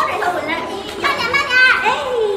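Speech only: a woman talking in Mandarin Chinese.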